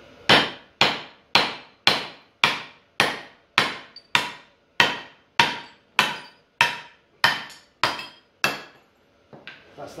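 A club hammer beating a cast iron brake disc, about fifteen blows at a steady two a second, each with a short metallic ring. The blows knock the cut top section off the disc. The hammering stops about a second before the end, with a few small knocks after.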